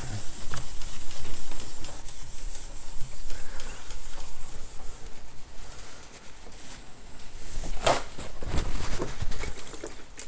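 A cloth rubbing and wiping across a MacBook screen, smearing toilet bowl cleaner over it to strip the anti-glare coating. It goes quieter midway, and a few sharp knocks come near the end.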